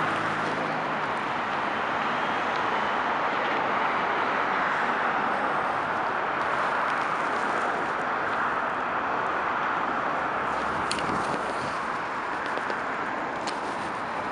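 Steady traffic noise from a busy multi-lane highway: the tyres and engines of cars and diesel tractor-trailers passing below blend into one even noise, with no single vehicle standing out.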